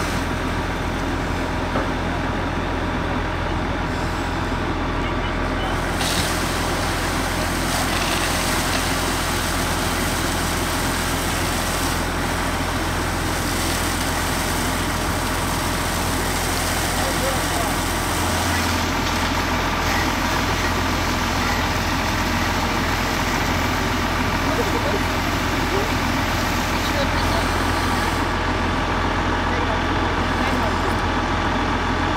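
Fire engine running steadily at pumping speed to feed a hose line, with the hiss of the water stream striking the burned van.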